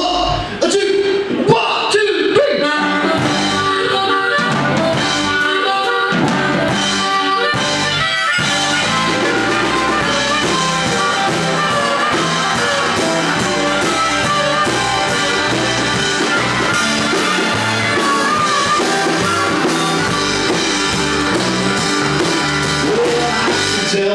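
Live blues-rock band playing: a harmonica in D leads over two electric guitars, electric bass and drum kit. The first few seconds are a stop-start count-in of separate hits before the full band settles into a steady groove.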